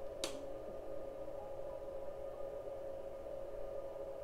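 A single switch click about a quarter second in as a 2000 W pure sine wave power inverter is switched back on. Under it is a steady, faint electronic hum from the running equipment.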